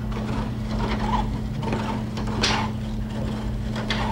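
Spring Flamingo bipedal walking robot stepping: a few short knocks of its feet and joints roughly a second apart, the loudest about midway, over a steady low hum.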